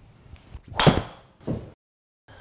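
A driver striking a Titleist Pro V1x RCT golf ball off a hitting mat: one sharp, loud crack a little under a second in. About half a second later comes a duller thump as the ball hits the simulator's impact screen.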